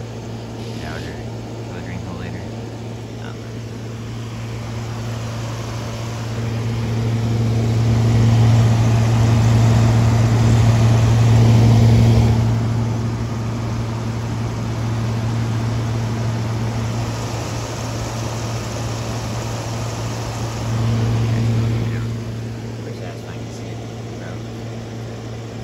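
LG 8000 BTU window air conditioner running: a steady low hum from the compressor and fan with a rush of airflow. It grows louder for several seconds in the middle, close up at the grille, and swells again briefly near the end.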